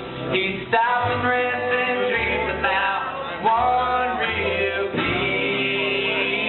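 A country-style song sung to guitar accompaniment, the voice moving through a few held, sliding notes over a steady bass.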